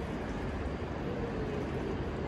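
Tea poured from a raised metal teapot into a small glass: a steady splashing stream over a low, even rumble.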